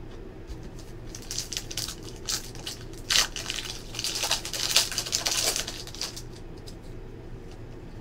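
Foil trading-card pack wrapper torn open and crumpled by hand, a crackling crinkle in irregular bursts that is loudest between about three and five and a half seconds in.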